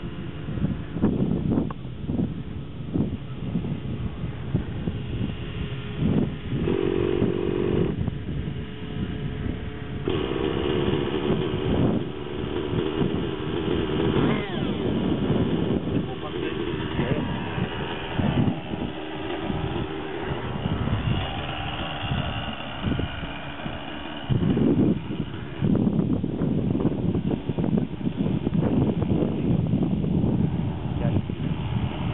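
Nitro glow engine of an Align T-Rex 600 radio-controlled helicopter being started: a brief steady whir from the electric starter a few seconds in. About ten seconds in, the engine catches and settles into a steady buzzing idle.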